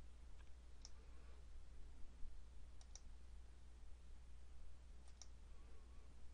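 Faint computer mouse button clicks, a handful spaced a second or two apart, over a low steady hum.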